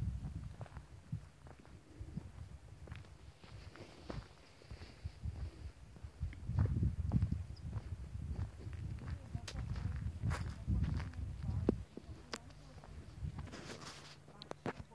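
Footsteps on a dirt road with wind gusting on the microphone, uneven low rumbling, and scattered sharp clicks.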